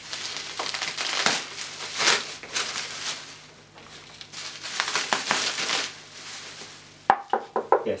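Bubble wrap crinkling and rustling as it is pulled off an upright vacuum cleaner, in two spells of handling, with a few short sharp clicks near the end.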